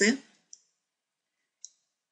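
Two short computer mouse clicks, about a second apart: one about half a second in and one near the end.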